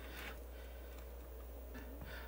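Quiet room tone with a faint steady low hum; nothing else stands out.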